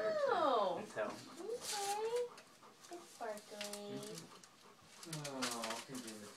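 A woman's high-pitched, drawn-out wordless vocal exclamations: the first slides steeply down in pitch, later ones rise or are held, with quieter gaps between them.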